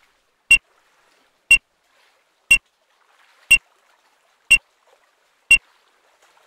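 Electronic race start timer beeping once a second, six short identical beeps ticking off the seconds of the start countdown.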